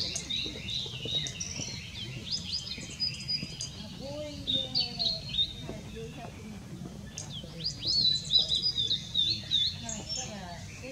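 Male blue-and-white flycatcher (Cyanoptila cyanomelana) singing: several phrases of clear, high sliding notes separated by short pauses, the longest and loudest phrase near the end.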